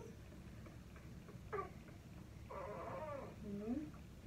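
A month-old baby fussing faintly: a short cry about a second and a half in, then a longer whimpering cry of about a second near the end.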